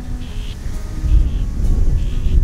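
Wind buffeting the microphone as a steady low rumble, with faint background music under it.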